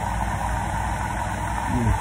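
A steady mechanical hum with a low rumble, like an idling engine, with no distinct events.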